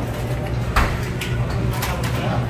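A few sharp clicks and knocks from hands working a sink tap and a plastic juice bottle, the loudest about a second in, over a steady low hum.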